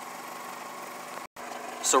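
Steady machine hum that briefly cuts out to silence a little past halfway, with a man's voice starting at the very end.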